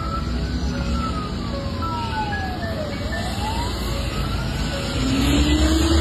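Wailing siren rising and falling slowly, about one full cycle every four seconds, over a steady rumble of traffic. A second, lower tone rises near the end.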